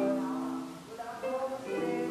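Portable electronic keyboard played slowly by a beginner using only the right hand: a few held notes, each giving way to the next every half second or so.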